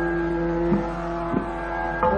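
Hindustani classical vocal recording of raga Hamir between sung phrases: steady held notes of the accompanying drone sound on, with two faint knocks, the first about three-quarters of a second in and the second a little over a second in.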